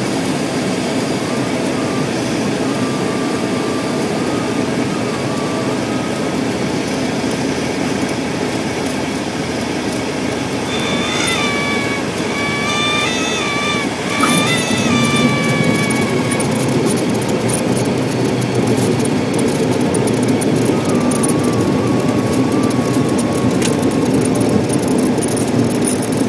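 Single-engine propeller airplane's engine running, heard from inside the cockpit, through the final approach and landing. A high, wavering tone sounds for a few seconds around the middle, and the sound grows louder from about fourteen seconds in as the plane rolls on the runway.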